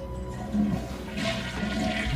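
Toilet flushing: a rush of water that builds and is strongest past the middle, over a low sustained music drone.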